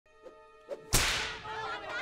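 A single sharp whip crack about a second in, its sound trailing off quickly. Voices of a crowd begin shouting near the end.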